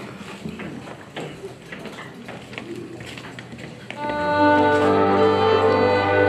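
A cimbalom band of violins, double bass and cimbalom strikes up about four seconds in, with held string chords over a sustained bass: the opening of a Moravian folk song. Before it, only a few faint clicks and knocks.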